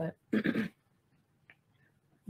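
A woman clears her throat once, briefly, just after a short spoken word.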